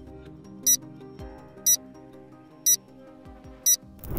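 Countdown timer sound effect ticking once a second, four short high clicks, over soft background music.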